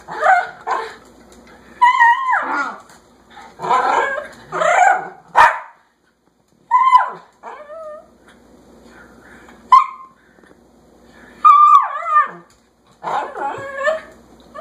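Pomeranian yapping in repeated high-pitched bouts, some yaps sliding up and down in pitch like whines: demand barking to be let outside.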